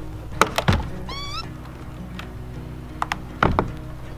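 A wooden kiln door being shut and its black T-handle latch turned: a few sharp clicks about half a second in, a short wavering squeak about a second in, and a heavier knock with more latch clicks near the end, over background music.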